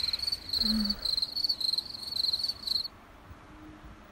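Crickets chirping, about three short trilled chirps a second, stopping about three seconds in.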